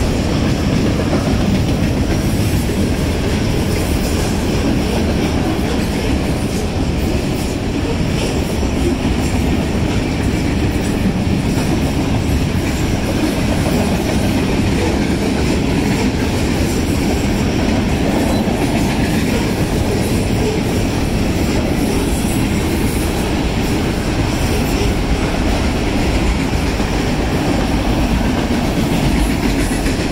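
Freight cars of a Union Pacific manifest train rolling past, a steady, loud sound of steel wheels on rail.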